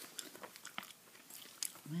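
Bubble gum being chewed close to the microphone: irregular soft mouth clicks and smacks.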